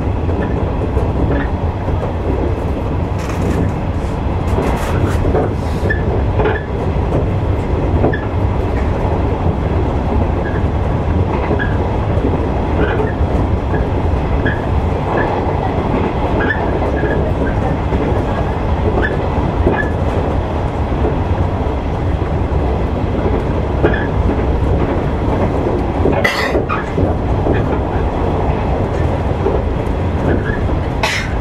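Electric train running along the line, heard from inside the front cab: a steady rumble of wheels on rail with faint, irregular clicks. About 26 seconds in there is one brief sharp noise.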